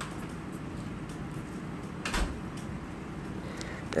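Low steady background with one brief knock or bump a little past halfway.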